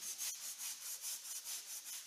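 A long-handled scrub brush scrubbing wet, soapy paving stones in quick back-and-forth strokes, about five a second, with a hissing, scraping sound.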